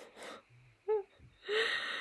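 A person breathing heavily: two short breaths at the start, a brief murmur about a second in, then a longer in-breath near the end. These are nervous breaths, the speaker having just said her stomach is knotted.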